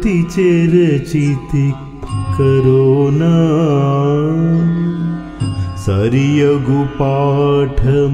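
A male voice singing a Carnatic-style keerthana with music, drawing out the words into long, ornamented, wavering notes, one held for about three seconds in the middle.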